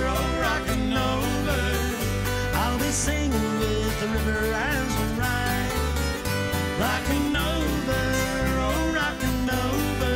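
A live country band plays an instrumental break. Acoustic guitars strum over a steady bass line, and a lead part slides between notes every couple of seconds.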